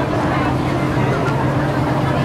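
A double-decker bus's engine running with a steady low hum close by in street traffic, under the chatter of people standing around.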